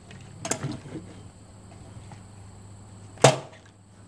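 Light clicks and knocks from handling a break-action single-shot shotgun, about half a second to a second in. A single sharp crack follows a little past three seconds, the loudest sound.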